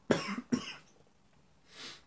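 A man coughing twice in quick succession, the second cough following about half a second after the first, with a quieter breathy sound near the end.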